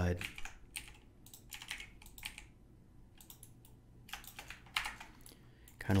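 Computer keyboard keys clicking, a few irregular keystrokes at a time with short gaps between.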